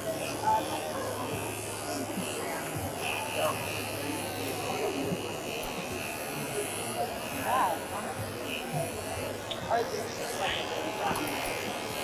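Cordless electric dog clipper running steadily as it is pushed through a dog's coat, a continuous buzz and whine, with background voices.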